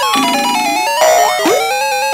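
2005 Playskool Busy Ball Popper's electronic sound chip playing a bouncy, buzzy synthesized melody through its small speaker. Quick rising swoop sound effects come in over the tune about a second in.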